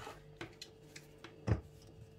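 A few light plastic clicks and one sharper knock about one and a half seconds in, as a hand blender's motor unit is handled and pressed onto its plastic chopper bowl; the motor is not running.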